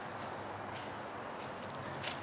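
Faint, steady outdoor ambience in woodland: an even hiss with a few soft, brief ticks.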